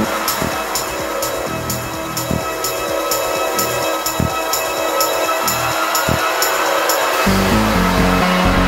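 Techno/tech-house music in a breakdown: a sustained synth drone under a steady high percussive tick about twice a second, with no kick drum. A deep bass line comes in near the end.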